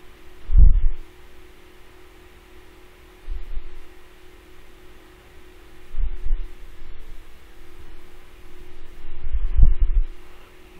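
A steady low hum with four dull low thumps spread through it, the loudest about half a second in and another near the end.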